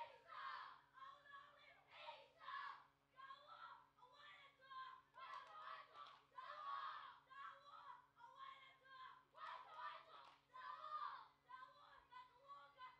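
A group of boys shouting a chant in unison for a haka-style Pacific war dance, in short, forceful calls about once a second.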